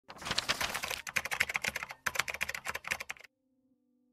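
Rapid clicking of keyboard typing, in three runs of about a second each, stopping a little over three seconds in.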